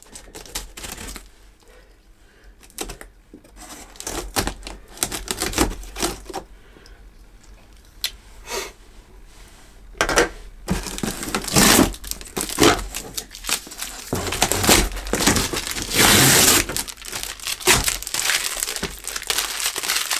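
Clear plastic packing tape being peeled off a cardboard box and crumpled in the hands. Faint scattered crackles at first, then about halfway through a long stretch of loud crinkling and ripping.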